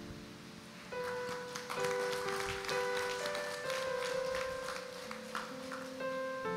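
Keyboard music: a slow melody of held, organ-like notes that comes in about a second in.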